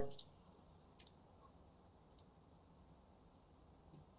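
A few faint computer mouse clicks, about a second apart, over quiet room tone.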